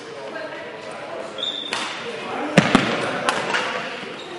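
Badminton rally in a sports hall: a brief high squeak about a third of the way in, then sharp racket strikes on the shuttlecock, the loudest a quick pair a little past halfway and another shortly after, all echoing in the large hall.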